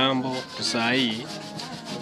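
Rubbing and handling noise from a handheld smartphone used as an interview microphone, under brief fragments of a man's voice; it goes quieter in the second half.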